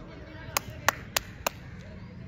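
Four sharp hand claps close to the microphone, about three a second, with faint voices in the background.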